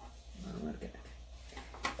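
A woman's soft spoken "okay", then a quick intake of breath, over a steady low hum.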